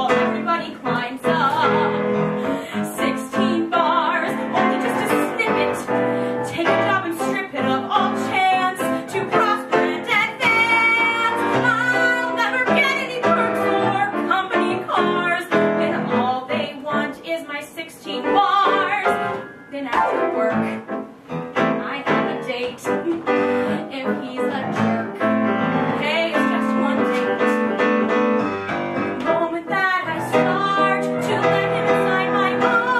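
A woman singing a musical-theatre song to piano accompaniment, with a short drop in level about twenty seconds in.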